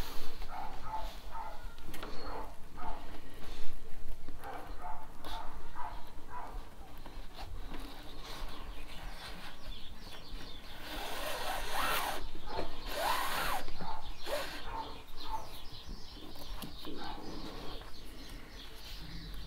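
Paracord rustling and sliding as it is threaded over and under through a flat woven knot, with a louder stretch of rustling past the middle. Bird calls in the background.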